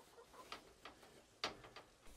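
Near silence, broken by a few faint, short sounds from domestic hens. The clearest comes about one and a half seconds in.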